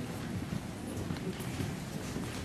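Irregular footsteps and knocks of hard-soled shoes on a stage floor as people walk to their chairs and sit down, under a low murmur of voices.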